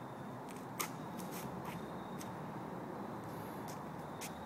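Light footsteps on a leaf-strewn woodland tee area: a handful of soft clicks and crunches in the first two seconds, one sharper than the rest about a second in, over faint steady outdoor ambience with a thin high steady tone.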